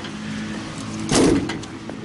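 A steady low mechanical hum, with one short, loud rushing noise a little over a second in that lasts about half a second.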